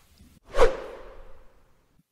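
A whoosh transition sound effect about half a second in: a quick downward sweep that fades out over about a second.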